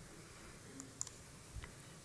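Quiet room with two or three faint, sharp clicks near the lectern microphone, the clearest about a second in.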